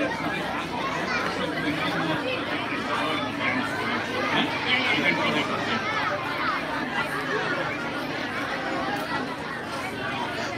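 An audience of children chattering, many voices talking over one another without a break.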